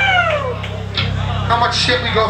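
A man's voice in a live club room: one long call falling in pitch, then a few short spoken fragments, over a steady low hum.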